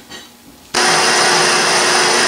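Metal lathe running while facing a gray cast iron backing plate: after a faint start, a loud steady machine whir with a high hiss comes in abruptly about three-quarters of a second in and holds steady.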